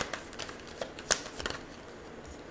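Tarot cards being handled and shuffled: a quick run of sharp card snaps and flicks over the first second and a half.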